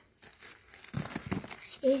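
Paper crinkling as wrapped candies are pushed into a paper piñata, starting about halfway through in a run of irregular crackles.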